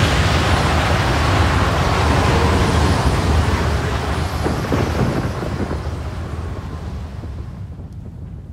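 A loud, deep rumble with a hiss over it that slowly fades away, dying down most in the last few seconds.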